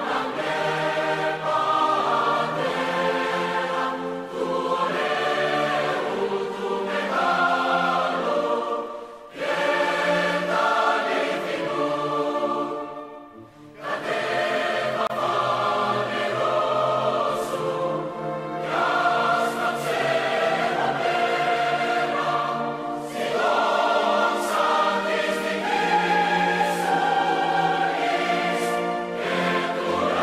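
Choral music: a choir singing sustained chords, with short breaks between phrases about nine and thirteen seconds in.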